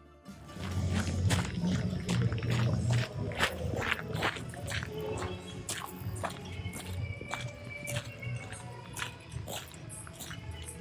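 Footsteps crunching on a gravel path, over bass-heavy music from a nearby party.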